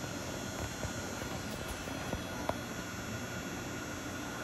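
Steady low background hum and hiss of a workshop, with one faint tick about two and a half seconds in.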